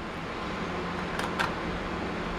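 Steady fan noise with a faint hum, and two faint clicks a little over a second in, a fraction of a second apart, from hands handling the laptop's casing.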